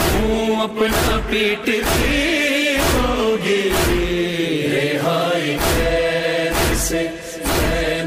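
A Shia noha playing: a male reciter chants a mournful Urdu lament in long, melodic held lines, over a deep thump that keeps a steady beat about once a second.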